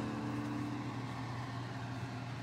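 The last of the background music dies away in the first half second, leaving a steady low hum with faint hiss.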